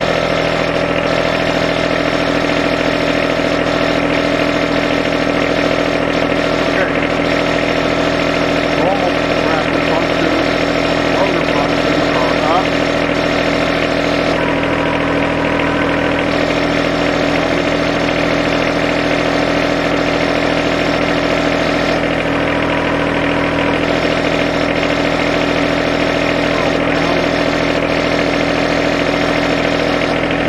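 John Deere 1025R compact tractor's three-cylinder diesel engine running steadily.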